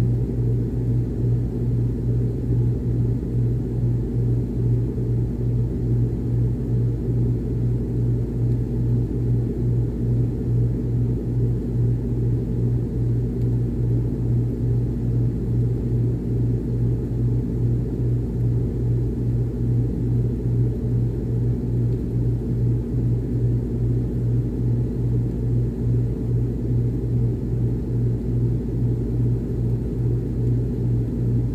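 Miller package air-conditioning unit running, heard through a duct register: a steady low hum with a regular throb in level.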